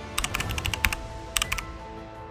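Computer-keyboard typing sound effect: a quick run of key clicks through most of the first second, then a short burst past halfway before it stops. Soft background music with sustained tones plays under it.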